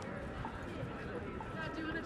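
Busy pedestrian street: passers-by talking, with footsteps on stone paving.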